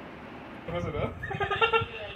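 Room noise, then people's voices and laughter breaking in about two-thirds of a second in.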